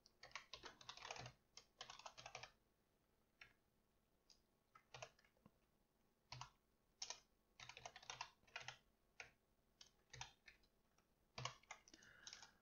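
Faint computer keyboard typing: short runs of quick keystrokes with pauses between, and a few single key presses.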